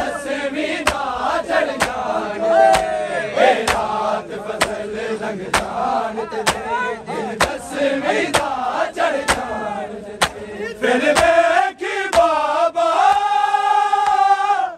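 Men's voices chanting a noha together, with chest-beating matam: a sharp hand slap on the chest in unison about once a second. Toward the end the chanting settles into a long held sung line.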